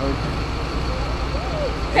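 Steady low rumble of a coach's diesel engine idling, with faint voices in the background.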